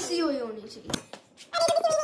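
A child's voice making wordless, wavering high-pitched sounds, with a short knock about a second in.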